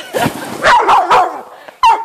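A dog barking several times in quick succession, short sharp barks.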